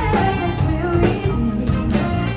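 Live band playing: a woman singing into a microphone over electric guitar, saxophone and drum kit, with regular drum hits.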